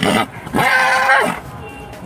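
Stallion neighing: a short call at the start, then a longer call about half a second in that holds its pitch and drops away at the end.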